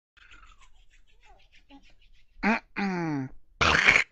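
A man's voice close to the microphone, not in words: after faint rustling and clicks, two short hums, the first rising and the second falling in pitch, then a loud, harsh burst of breath near the end.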